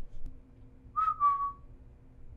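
A brief high whistle-like tone about a second in, held for under a second and falling slightly in pitch, over a faint low steady hum.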